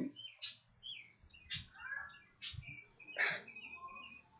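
Small birds chirping: a run of short, quick chirps and whistled notes, with a few harsher calls about once a second.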